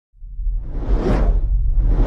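Intro sound effect: a deep rumble with a whoosh that swells up to a peak about a second in and fades, and a second whoosh building near the end.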